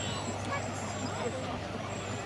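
A Hawker Hurricane's Rolls-Royce Merlin V12 engine giving a low, steady drone from the sky during a display, with spectators chatting over it.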